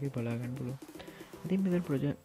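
A person's voice speaking, with background music underneath.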